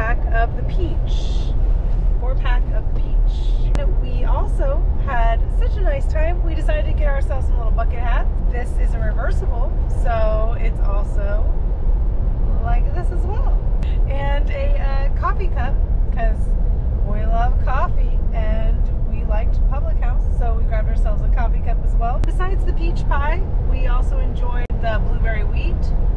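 Steady low road and engine rumble inside a moving vehicle's cabin, under a woman's talking and laughter.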